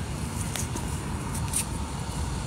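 Steady low rumble of outdoor city background noise, with a couple of faint ticks.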